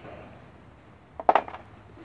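A felt-tip marker and a pen handled on a tabletop among hand tools: a short clatter of light knocks about a second in.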